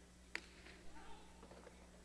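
A single sharp crack of the jai-alai pelota, the hard goatskin-covered ball, striking during a rally, ringing briefly in the fronton, followed about half a second later by faint high squeaks.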